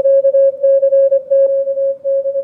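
Morse code (CW) from a weak amateur station, received on a Yaesu FTdx5000MP transceiver and played through its speaker: one steady tone near 600 Hz keyed on and off in dots and dashes over a quiet background. The audio peak filter is set narrow, pulling the faint signal up out of the noise.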